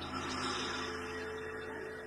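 Sustained electronic drone: a few steady held notes over a low amplifier hum, fading as a piece of live music ends.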